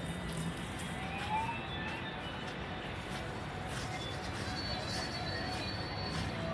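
Steady background noise with faint music.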